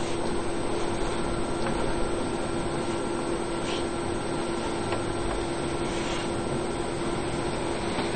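Cheap roller laminator switched on and warming up, giving a steady hum with a constant tone over an even hiss.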